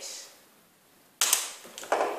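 A single sharp snap about a second in, followed by a few small clicks, from handling the clarinet parts and the reed in its plastic sleeve.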